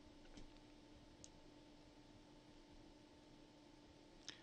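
Near silence: room tone with a faint steady hum and a couple of faint computer mouse clicks.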